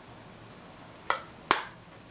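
Two sharp clicks about half a second apart, as a plastic pressed-powder compact is snapped shut and put down.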